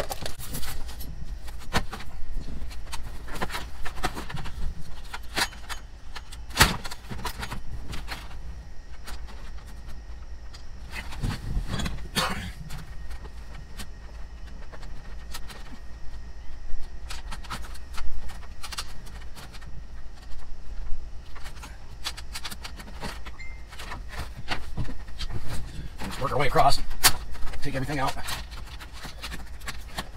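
Hands working the plastic dash bezel and its clips loose on a Ford F-550's dashboard: scattered clicks, knocks and rattles of plastic trim, over a low steady hum.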